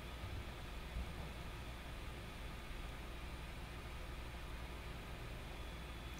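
Quiet steady hiss with a low hum underneath: room tone, with no distinct sound standing out.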